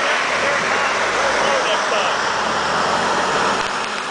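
Jeep Wrangler JK engine running under load as the Jeep drives through a mud pit, its tyres churning through thick mud, easing slightly near the end as it pulls away. Voices can be heard faintly.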